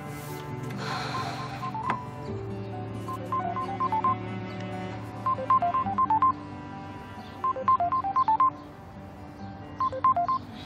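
Smartphone ringtone for an incoming call: a short melody of quick high beeps, repeated about every two seconds over soft, sustained background music.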